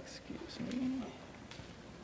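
A low, short hummed murmur from a voice, twice in the first second, with a few sharp clicks.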